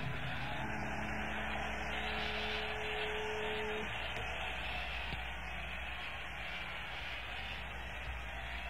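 The last held notes of a live rock band die away and stop about four seconds in, over the steady hiss and hall noise of an audience bootleg recording.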